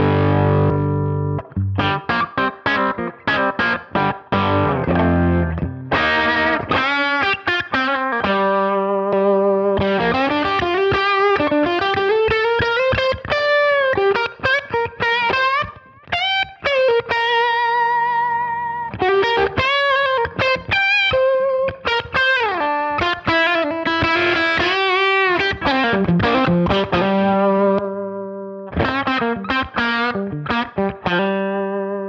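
Overdriven electric guitar, a PRS Custom 22 played through a Jam Pedals Boomster booster into a Sound City SC20 amp. It opens with choppy chord strokes for several seconds, then plays a lead line of long held notes with string bends and wide vibrato.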